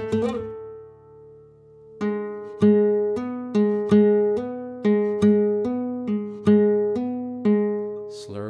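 Flamenco guitar in Rondeña tuning played slowly. It opens with a few quick thumb notes that ring out and fade. From about two seconds in comes an even run of single notes, about two a second, rocking between two neighbouring pitches in hammer-on and pull-off slurs.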